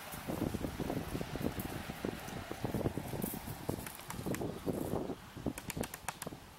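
Rustling, wind-like outdoor noise with many irregular soft thumps, and a few sharp clicks near the end.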